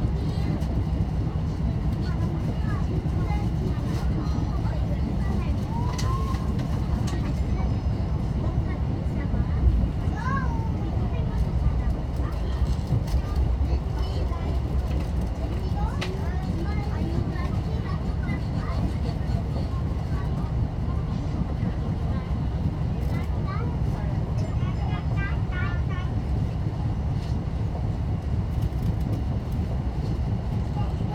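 Steady low rumble of a Mugunghwa-ho passenger train running along the track, heard from inside the carriage, with a brief low thump about ten seconds in.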